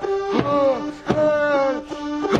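Small electronic home keyboard playing a funk-style tune: two steady held notes under a sharp hit about every three-quarters of a second, each hit followed by a falling tone.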